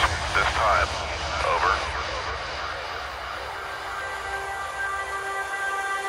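Electronic trance track at a breakdown: the bass and beat fall away, leaving a rushing wash of noise. Short wavering gliding sounds come in the first two seconds, and held synth notes come in near the end.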